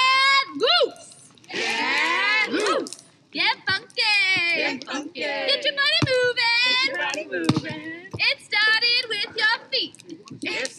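A small group of voices singing and shouting a call-and-response action song, drawn-out sung words rising and falling in pitch, with brief pauses about one and three seconds in.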